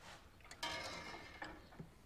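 Faint kitchen sounds of broth being served into a cup: a short pour lasting under a second, starting about half a second in, followed by a couple of light clicks of crockery.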